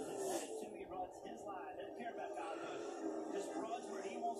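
NASCAR race broadcast playing from a television's speakers, mostly a commentator's voice with the broadcast's background sound under it.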